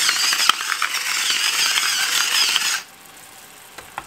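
A salt mill grinding salt: a steady, unbroken grinding that stops suddenly a little under three seconds in.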